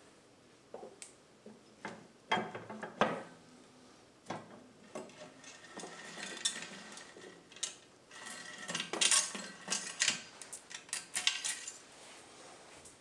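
Steel engine parts clinking and knocking against an aluminium crankcase as the crankshaft and transmission shafts are lifted out of a Honda CBR1000F crankcase half: irregular sharp clanks in clusters, the loudest run about nine to eleven seconds in.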